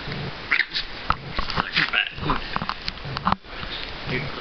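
A chihuahua snarling and growling with its teeth bared, in a run of short, uneven snarls.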